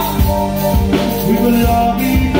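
Live band music at full volume: a drum beat with regular kick hits under held keyboard chords.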